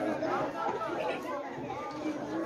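Chatter of many children's voices talking over one another, from a seated crowd of schoolchildren.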